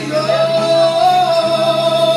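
A man singing one long held high note into a microphone, live, backed by keyboard and acoustic guitar in a band cover of a Filipino love song.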